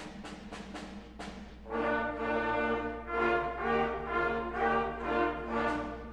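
School concert band playing. A steady beat of percussion strikes, about three a second, is joined about two seconds in by the wind section holding sustained chords that swell and ease. Near the end the chords stop and the percussion beat carries on alone.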